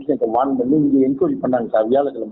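Speech only: a man talking over a phone line.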